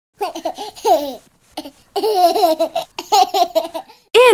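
A young child's voice giggling in several short bursts.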